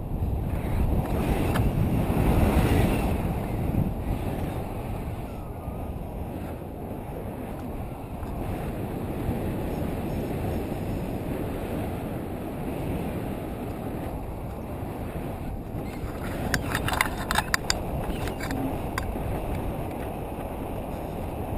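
Wind buffeting a camera microphone in paraglider flight: a steady low rumble that swells for a couple of seconds near the start. Near the end comes a short run of sharp clicks and rattles.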